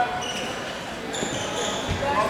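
Wrestling shoes squeaking on the mat in short high chirps as two wrestlers hand-fight, with a low thump on the mat just before the end, over spectators' voices.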